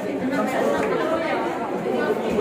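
Indistinct chatter: several people talking at once.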